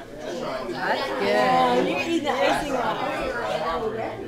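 Indistinct chatter of several people talking at once.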